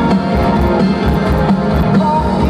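A live rock band playing loudly in a large arena, with a regular drum beat under layered instruments and no vocals in these seconds.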